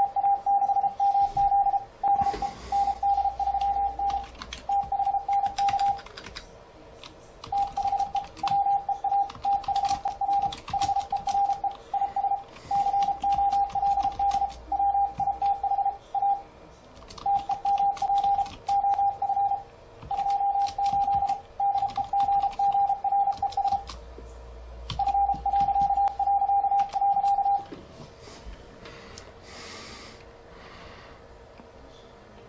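Morse code (CW) sidetone from an ICOM IC-7300 transceiver keyed by fldigi, a steady mid-pitched tone beeping out dots and dashes in runs of words with short pauses, stopping shortly before the end. Faint computer keyboard clicks run under it as the message is typed.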